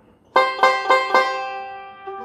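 Five-string resonator banjo picked with fingerpicks: four quick, bright notes about a quarter second apart on a partial C chord held at the 8th and 10th frets, then left ringing and dying away.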